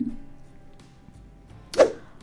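Soft background music with a short, loud whoosh sound effect near the end.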